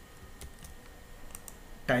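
A few faint, scattered clicks at a computer over a low steady hum.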